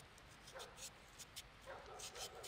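Faint scraping and ticking of a kitchen knife peeling the skin off a raw potato by hand. Two short, pitched animal-like calls come through, about half a second in and again near the end.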